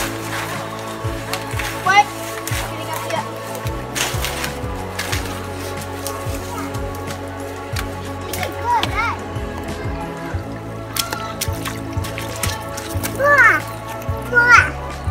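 Background music with sustained tones and a stepping bass line, with short high children's calls a few times and scattered light clicks over it.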